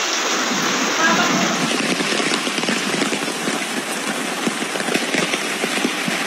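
Floodwater flowing fast across a floor and around furniture: a steady, loud rush of water.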